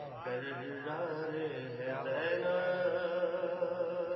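A man's voice chanting a devotional recitation into a microphone, melodic, with long held notes.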